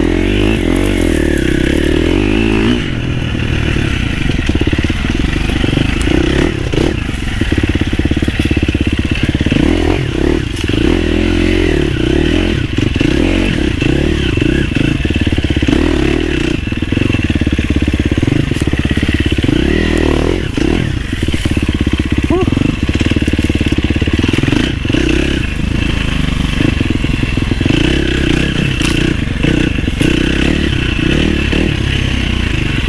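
Husqvarna FC350 dirt bike's four-stroke single-cylinder engine running under way, its revs rising and falling unevenly with the throttle. Scattered clattering comes from the bike over rough ground.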